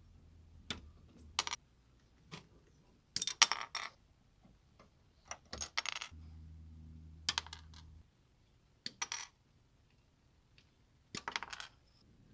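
Side cutters snipping plastic model-kit parts off the sprue: scattered sharp snaps and clicks, with a quick run of them about three seconds in. A faint low hum runs for a couple of seconds around the middle.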